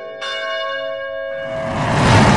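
Bell tones ringing, with a new strike about a quarter of a second in whose tones hang on. From about a second and a half, a noisy swell grows louder over them and becomes the loudest sound near the end.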